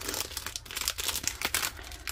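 Clear plastic packet crinkling as it is pulled open by hand: a dense run of crackles.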